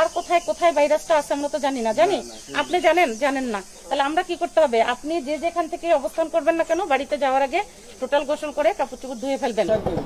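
A woman's voice talking in short phrases over a steady background hiss.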